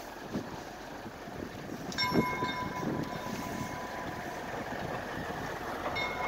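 East Broad Top gas-electric motor car approaching at a distance, heard faintly over a low rumble; a steady high-pitched tone from it sets in about two seconds in.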